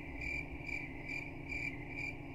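Crickets chirping in an even, repeating rhythm: the stock comic sound effect for an awkward silence after a confusing explanation.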